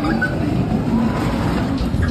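Spinning roller coaster train rolling along its steel track, a steady rumble.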